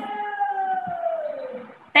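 A woman's voice holding a long, drawn-out vowel, the tail of a spoken "thank you", that slowly falls in pitch and fades out just before the end.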